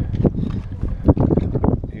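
Wind buffeting the microphone, a steady low rumble, with a few knocks from handling; the loudest knock comes about a second in.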